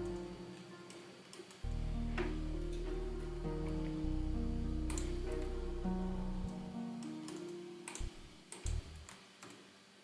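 Sylenth1 software synthesizer playing a slow line of long held notes that step from pitch to pitch, with a deep low layer under them from about two seconds in until past the middle. Near the end the notes fade and a few sharp mouse clicks are heard.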